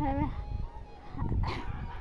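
A short animal call about one and a half seconds in, over a low rumble.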